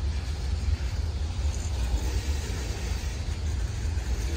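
Boxcars of a long manifest freight train rolling past, a steady low rumble.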